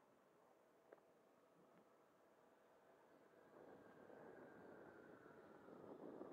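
Faint, distant sound of an 80 mm electric ducted fan jet in flight, growing louder from about halfway through as it approaches. There is a small click about a second in.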